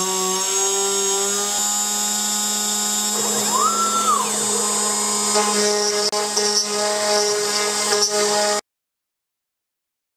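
CNC router spindle running at speed with an eighth-inch downcut bit, a steady whine with several tones, on a surfacing pass milling a wooden headstock blank down to thickness. About three to four seconds in a higher whine rises, holds and falls, and more tones join around five seconds in as the cutting gets under way. The sound cuts off abruptly to silence near the end.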